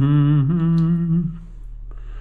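A man humming a held, wavering note that trails off about a second and a half in, followed by a light tap near the end.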